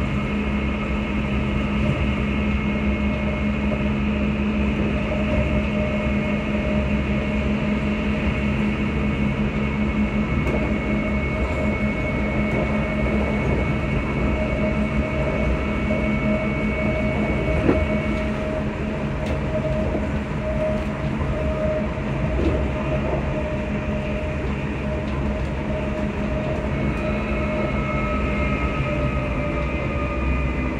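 Passenger train running along the track, heard from inside the carriage: a steady rumble with a constant whine of several held tones. There is a single sharp knock about two-thirds of the way through, and near the end new higher whine tones come in.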